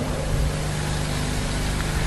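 Steady background noise: an even hiss with a constant low hum underneath.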